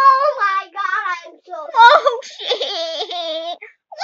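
A young girl's high-pitched voice making wordless play calls and squeals, rising and falling in pitch.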